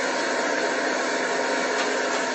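A boat under way: a steady engine drone under an even rush of water and wind noise.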